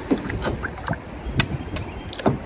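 Kayak paddle strokes splashing and dripping in river water as the kayak is turned, with a couple of sharp ticks about halfway through over a low, steady rumble.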